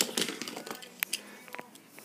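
A few scattered light clicks and taps of hard plastic toy pieces, the strongest about a second in, dying away after a rattling clatter.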